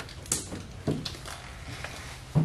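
A few light clicks and handling sounds as the lower door of a small retro refrigerator is worked open, with a sharp click about a third of a second in and another about a second in.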